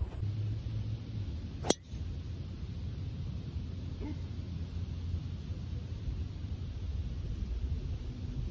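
A golf driver striking a ball off the tee: one sharp crack about two seconds in, over a steady low rumble of wind on the microphone.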